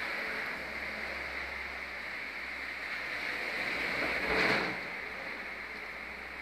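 Steady background hiss with no clear source, swelling briefly into a louder rush about four seconds in.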